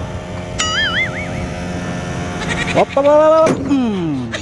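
Steady low hum of the Howo dump truck's diesel engine running, overlaid with added comic sound effects. A wavering whistle comes in about half a second in, and near the end a bleat-like call rises and then slides down.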